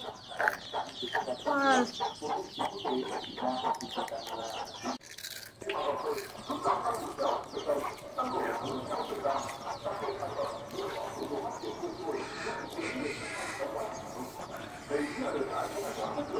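Chickens clucking, many short calls overlapping, with a brief gap about five seconds in.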